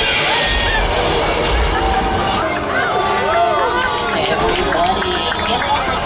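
Many overlapping excited voices of tram riders over a loud attraction soundtrack with a deep rumble. The rumble drops away about two and a half seconds in.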